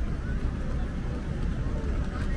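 Road traffic passing close by, a steady low rumble of car engines and tyres, with the voices of a crowd mixed in.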